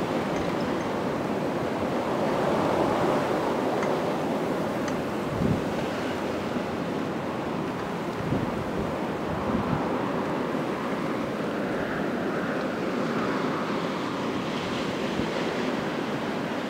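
Blizzard wind blowing steadily with swelling gusts, a few of which buffet the microphone with short low thumps.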